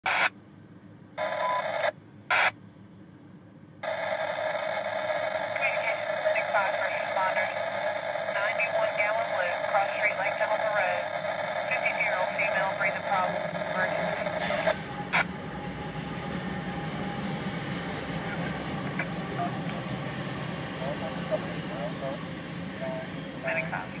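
Tinny, narrow-band radio voices chattering for the first part, with brief dropouts at the start. From about halfway on, a steady low rumble of a Norfolk Southern freight train rolling past takes over.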